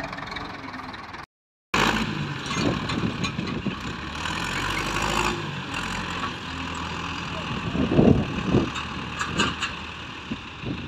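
Ursus C-360 tractor four-cylinder diesel running under load while towing another tractor out of soft ground, with louder surges near the end. There is a brief cut to silence about a second in.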